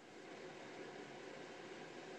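Faint, steady hiss of an open microphone on a video call, fading in over the first half second with no other sound over it: background noise from a participant's line reconnecting.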